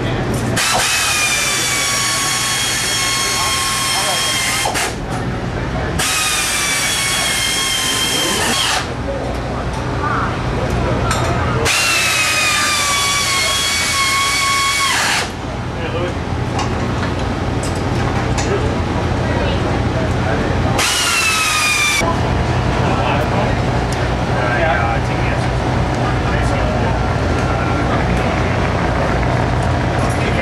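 A handheld power tool, drill-like, runs in four bursts. Its whine drops in pitch through each run, and the last burst is short.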